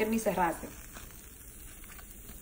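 A woman's voice briefly, then a faint, steady sizzle from tortillas and melting mozzarella cooking in a hot ridged grill pan.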